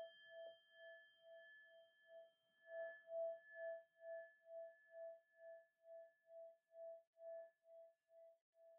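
A meditation bell's ringing dying away after a closing strike, faint, its single tone wavering about twice a second as it slowly fades. The bell marks the end of the meditation session.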